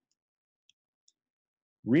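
Near silence broken by three tiny, faint clicks, then a man's voice starts just before the end.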